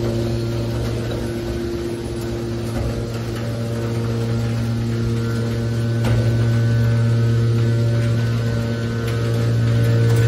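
Hydraulic scrap metal baler's power unit running with a steady low hum and higher steady overtones.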